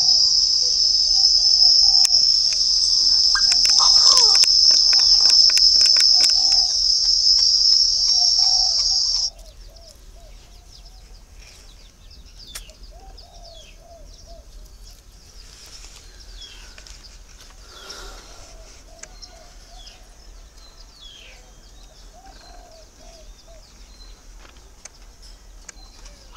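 A loud, steady, high-pitched insect buzz that cuts off suddenly about nine seconds in, with scattered clicks during it. After that only faint, short bird chirps remain.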